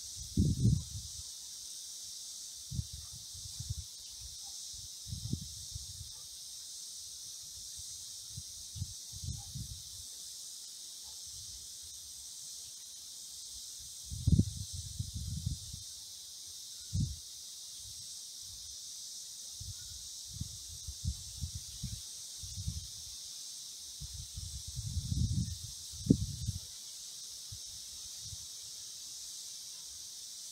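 A steady high-pitched chorus of insects buzzing throughout, broken by short low rumbles and thuds every few seconds, the loudest about half a second in, around 14 s and around 26 s.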